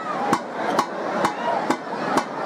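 Festival percussion: sharp, evenly spaced strikes about twice a second over a busy wash of voices or instruments.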